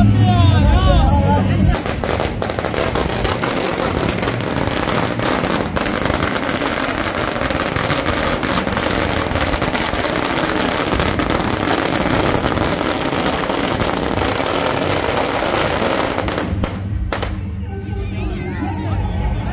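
A long string of firecrackers going off in a continuous rapid crackle, starting about two seconds in and stopping shortly before the end. Processional band music plays just before it begins and comes back as it ends.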